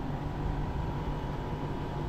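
Steady outdoor city hum from road traffic and air-conditioning units, with a faint steady whine over a low rumble.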